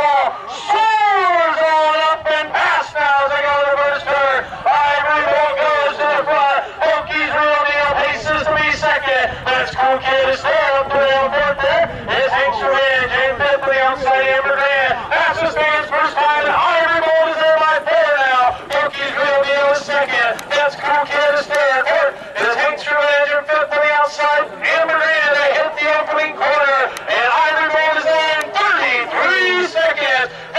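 Race announcer calling a harness race, talking fast and without a break.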